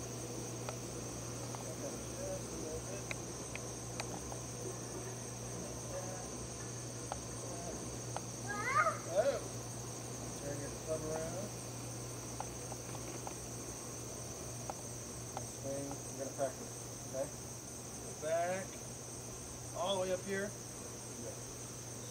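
A steady, high-pitched chorus of insects, crickets or similar, runs without a break over a low steady hum. Faint distant voices come and go, most clearly about nine seconds in and again near the end.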